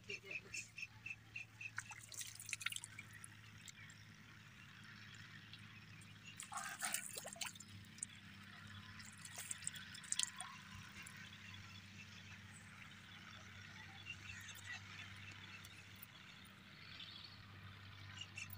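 Faint splashing and dripping of water as hands are washed in a shallow, muddy irrigation channel, water running off the hands back into it. A steady low hum sits underneath throughout.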